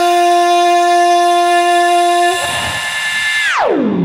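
A single sustained reedy, horn-like musical tone held on one note. About two and a half seconds in it thins out, and near the end its pitch slides steeply downward.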